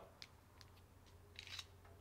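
Near silence with a few faint, scattered clicks from a small Sig Sauer micro-1911 pistol being handled on a wooden tabletop.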